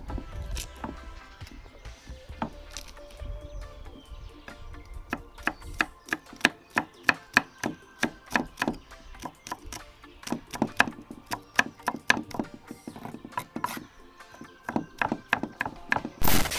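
Large kitchen knife chopping garlic cloves on a thick wooden log chopping board: a few scattered knocks of the blade on the wood at first, then a quick, fairly even run of about three chops a second from about five seconds in, thinning out near the end.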